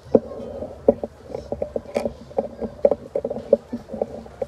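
Dance drum beaten in a quick, uneven rhythm of about three to four strikes a second for a troupe of matachín dancers, with one sharper crack about two seconds in.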